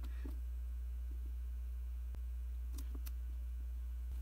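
Steady low electrical hum, with a few faint clicks as a potentiometer knob on an electronic load board is turned to bring the current up to about an amp.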